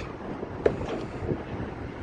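Wind rumbling on the microphone, with one short click a little over half a second in.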